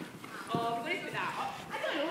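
A horse cantering past, its hoofbeats falling on the sand arena floor, with a sharp knock about half a second in.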